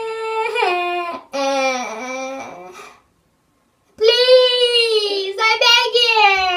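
Girls' voices wailing in long, drawn-out mock cries, the pitch sagging as each cry goes on. The cries break off for about a second in the middle, then start again with another long wail.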